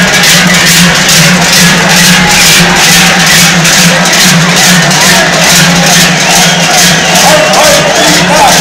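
Large joare cowbells strapped to the backs of a troupe of Basque joaldun dancers clanging in unison in a steady, even beat as they jog in step, over a continuous low ringing from the bells.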